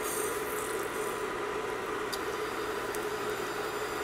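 Mustard seeds sizzling in hot oil in a stainless steel pan, the hiss brightening as they go in at the start, with a few faint pops.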